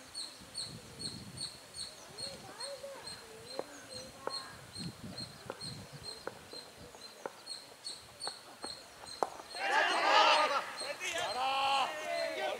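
Several voices shouting loudly on a cricket field, starting about ten seconds in, over a high, thin chirp that repeats evenly about two to three times a second. There are a few faint knocks in the middle.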